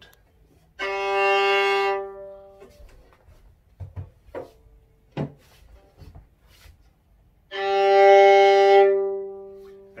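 Two long bowed notes on a violin's open G string, each about two seconds, the second fading out near the end: first on a cheap $100 violin with a very basic sound, then on a better $1,500 violin for comparison. A few faint knocks between the notes.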